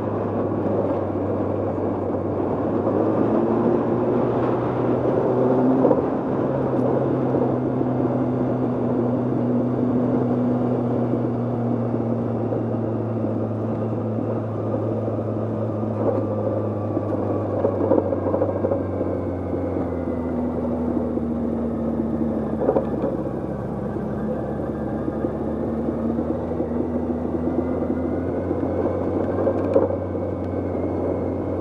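Motorcycle engine running under way, with a steady low hum and pitch glides up and down as the revs change, over wind and road noise on the bike-mounted microphone.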